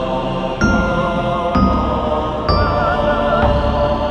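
Horror-themed electro house music: sustained synth or vocal-like chant notes that change pitch about once a second, some with vibrato, over a low bass pulse.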